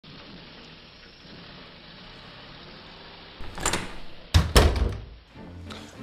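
A steady faint hiss, then a handful of heavy thumps from about three and a half to five seconds in, the loudest pair close together near four and a half seconds.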